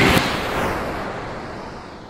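Logo-reveal sound effect: a noisy whoosh and hit that dies away in a long, smooth fading tail.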